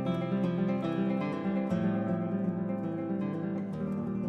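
Classical guitar played fingerstyle: a quick run of plucked notes over lower sustained bass notes.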